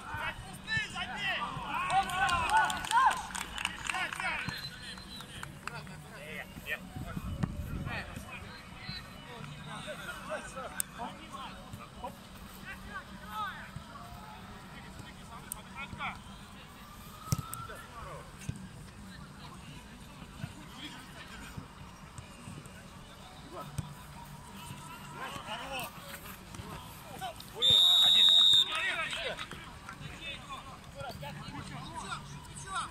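Players shouting to each other during a small-sided football match, with a few sharp knocks of the ball being kicked. Near the end a referee's whistle blows once, a loud, steady, shrill blast of about a second.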